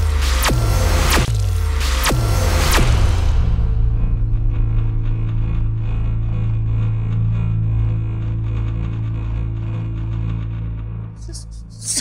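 Dramatic background score: four sharp hits, each with a falling low boom, about one every three-quarters of a second. Then a long, low held drone that fades away near the end.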